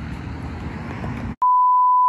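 Low outdoor background rumble that cuts off abruptly about one and a half seconds in, replaced by a loud, steady, single-pitch test-tone beep: the reference tone that goes with TV colour bars.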